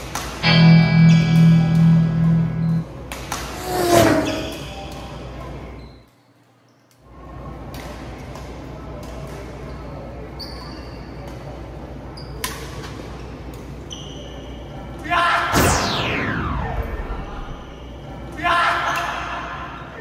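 Badminton rally in a large hall: sharp racket strikes on the shuttlecock at intervals. Added music and sound effects sit over it: a loud pitched sting near the start and a long falling whoosh later on. The sound cuts out for about a second in the middle.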